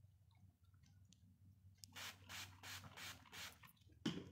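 Grooming noise on a dog's curly coat: a run of about six short hissing strokes, roughly three a second, starting about halfway through, over a faint low hum.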